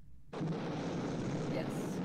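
Film-soundtrack flamethrower firing a sustained blast: a dense rushing roar that starts abruptly a moment in and keeps going.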